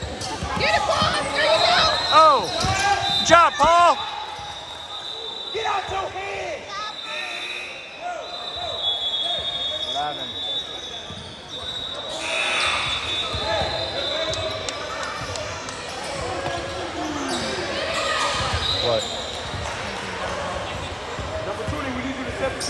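Basketball game on a hardwood gym court: the ball bouncing on the floor and sneakers squeaking, with a cluster of squeaks about two to four seconds in. Voices of players and spectators echo through the large hall.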